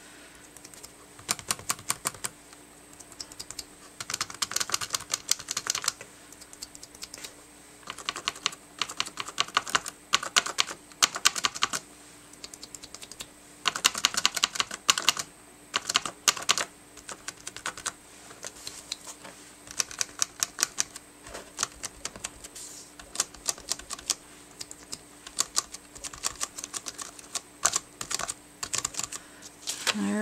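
Makeup sponge dabbing acrylic paint through a cardstock stencil onto a paper journal page: quick runs of light taps, a second or two at a time with short pauses between.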